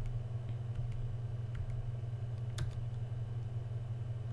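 A few faint computer keyboard key clicks, the sharpest about two and a half seconds in, over a steady low hum.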